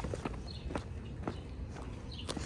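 Footsteps on a concrete sidewalk at a walking pace, about two steps a second, over a low steady rumble.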